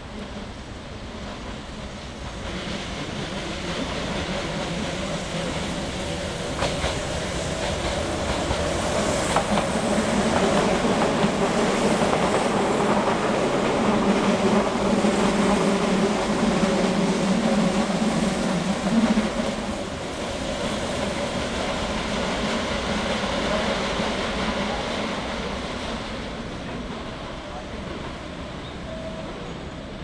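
A train running past, out of view, its rumble and wheel noise building over about ten seconds, loudest in the middle, then fading away.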